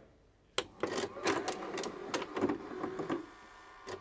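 Mechanical clicking and whirring sound effects of a TV channel ident, starting with a sharp click about half a second in and quietening near the end.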